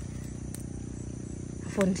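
Steady high-pitched insect chirring over a low background hum, with a faint click about halfway. A man's voice starts near the end.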